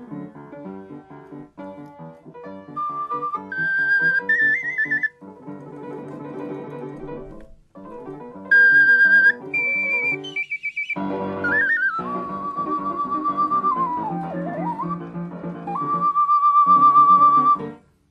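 Ocarina playing a melody of pure, held notes over piano accompaniment. The ocarina comes in about three seconds in with notes stepping upward, drops out, returns, dips in pitch, and finishes on a long wavering note before both instruments stop just before the end.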